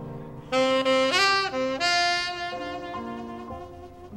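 Saxophone entering loudly about half a second in with a phrase of held notes that step up and down in pitch, then easing off, in a live jazz quintet.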